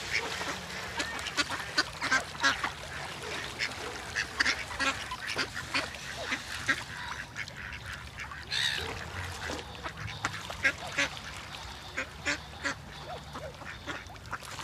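Ducks quacking repeatedly: a quick, irregular run of short calls, with one longer call about two-thirds of the way through.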